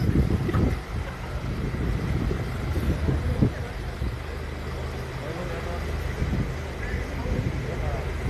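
A vehicle engine running steadily at a low hum, with indistinct voices in the background.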